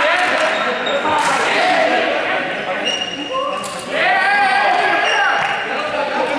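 Several young people's voices talking and calling out, echoing in a large sports hall, with a few short high-pitched squeaks.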